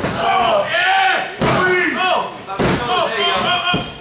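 A referee's hand slapping a wrestling ring mat three times, about a second and a quarter apart, as a pinfall count. Shouting voices run over the slaps.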